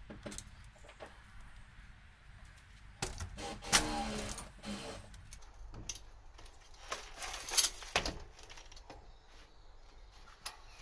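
Metallic clicking and rattling as the rear wheel of a 1950s Holdsworth Monsoon road bike is worked free of the frame, with chain and derailleur clattering. The clatter comes in two louder bursts, about three seconds in and again near eight seconds.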